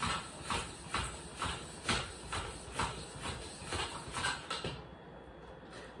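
Hand floor pump worked in quick strokes, about two a second, each stroke a short whoosh of air into a dirt bike tyre that is now taking air. The strokes stop shortly before the end.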